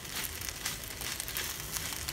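Fried pasta being stir-fried in a hot pan, a spatula scraping and tossing it with a steady light sizzle and scattered scrapes.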